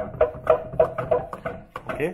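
Hand-operated pump-up pressure sprayer bottles being pumped. Each plunger stroke gives a short squeaky note, in a steady rhythm of about three strokes a second, stopping near the end.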